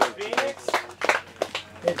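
A few people clapping, the claps thinning out, with brief voices over them; a man says "good" near the end.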